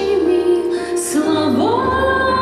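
A woman singing a ballad into a microphone over instrumental backing. A held note glides up to a new pitch about one and a half seconds in.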